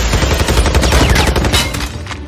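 Automatic rifle fire: a rapid run of shots in quick succession, easing off near the end.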